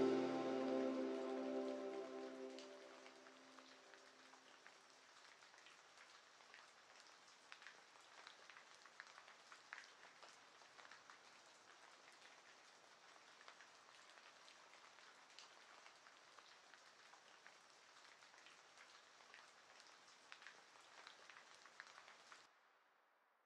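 A lo-fi track fades out over the first few seconds. It leaves a faint rain ambience: a soft steady hiss with scattered drop ticks.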